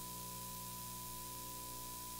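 Steady electronic hiss with a thin, unchanging tone and a low hum under it: the noise floor of the sound feed, with no sound from the room.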